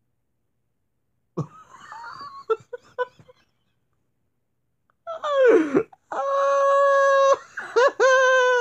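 A person's voice making drawn-out non-speech sounds: a few short sounds about a second and a half in, then after a pause a falling cry and a long steady high note held for about a second, with another short cry near the end.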